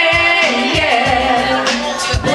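A woman singing karaoke into a microphone, her amplified voice holding and bending sung notes over a backing track with a steady beat.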